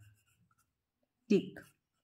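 Pen writing letters on a textbook page, a faint scratching, broken about a second and a half in by a short spoken syllable.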